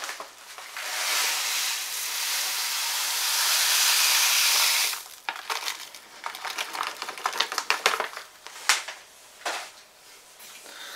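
Crushed malt grain poured from a plastic bag into a mash of hot water: a steady hissing pour for about four seconds, then irregular rustling and clicks as the last of the grain is shaken out of the bag.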